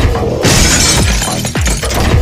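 A crash and glass shattering, starting about half a second in, over music with a regular deep bass beat.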